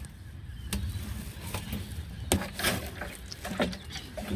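Plastic watering cans being handled and set down: a handful of light knocks and clacks, the sharpest a little past two seconds in, over a steady low rumble.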